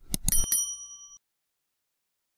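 Subscribe-button animation sound effect: a few quick mouse clicks, then a single bright bell ding that rings briefly and cuts off abruptly.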